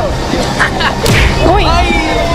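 Three sharp smacks in quick succession, the last and loudest just after a second in: a woman's hand striking a man, amid shouting voices.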